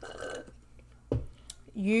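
Sipping a drink through a plastic straw at the start, then a short low sound about a second in; a woman's voice begins near the end.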